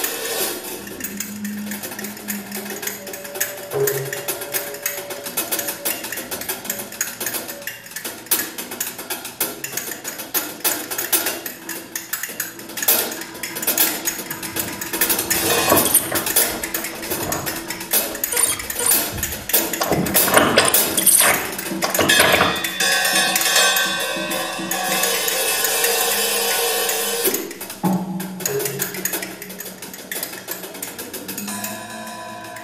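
Improvised experimental music from a small live ensemble: fast, irregular clattering and tapping percussion over a few held tones.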